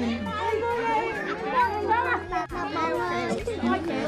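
A close crowd of children chattering and calling out over one another, with many high voices overlapping.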